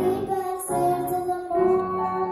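A young girl singing a song into a microphone, held melodic notes in short phrases, accompanied by a grand piano.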